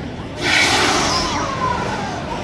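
Gas flame tower firing a fireball: a sudden loud whoosh about half a second in that slowly dies away, over crowd chatter.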